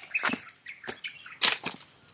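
Dry grass and leaves rustling and crackling close to the microphone, in several short bursts.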